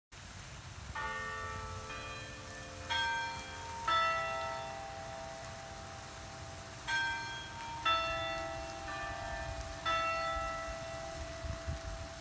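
Tower bells chiming a melody in two phrases: four notes about a second apart, a pause of about three seconds, then four more notes, each one ringing on and overlapping the next.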